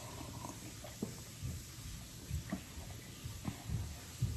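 Soft mouth and swallowing sounds of a man sipping and tasting a light lager from a glass: a few short, quiet gulps at uneven intervals.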